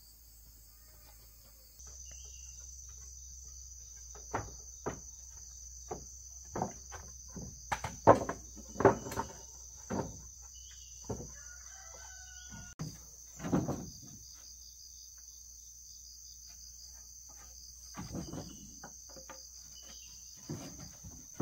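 Wooden planks knocking against each other and onto a plank platform as they are set down, a run of sharp knocks mostly in the middle of the stretch. A steady insect drone runs underneath, and a chicken calls faintly.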